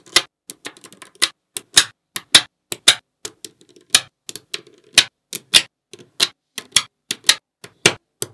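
Small neodymium magnet balls clicking sharply as strips and blocks of them are snapped onto a flat slab of balls: an irregular series of crisp clicks, about two or three a second, some in quick pairs.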